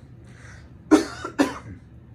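A man coughing twice in quick succession, two short sharp coughs about half a second apart, about a second in.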